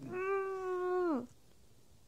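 A young woman's voice: one held, wordless whine through a cloth pressed over her mouth, steady in pitch for about a second and then dropping away.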